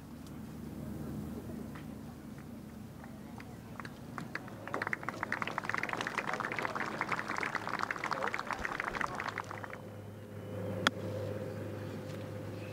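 Golf spectators applauding for about five seconds before the clapping dies away. Near the end comes a single sharp click: a wedge striking the ball on a chip shot from just off the green.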